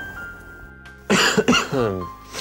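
A man with a cold coughing hoarsely, a couple of coughs about a second in, over quiet background music.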